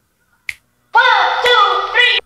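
A short break in the music: a single sharp snap about half a second in, then from about a second in a loud, pitched voice-like sound whose pitch slides downward.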